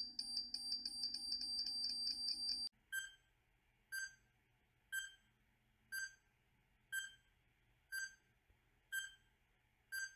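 Countdown timer sound effects: a fast, alarm-like electronic beeping over the last seconds of a countdown, which cuts off abruptly a little under three seconds in. Then short electronic beeps, one each second, as the next countdown ticks down.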